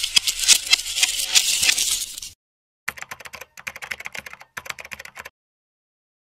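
Rapid clicking like keyboard typing, a sound effect for an animated logo intro. A loud run lasts about two seconds, then after a short gap a fainter run goes on to about five seconds in.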